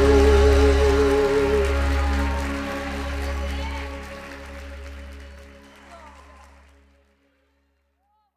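A live gospel band's final held chord, fading away over about seven seconds.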